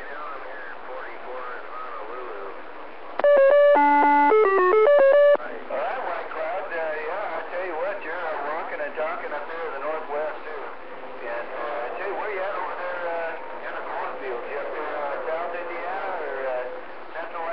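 A distant station's voice heard through a CB radio's speaker, thin and noisy. About three seconds in, a loud tune of stepped electronic beeps runs for about two seconds before the talk resumes.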